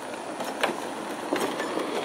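Golf cart rolling up close on a concrete path, with a steady rumble and irregular clicks and knocks from the tyres and body. The sound grows louder as the cart nears.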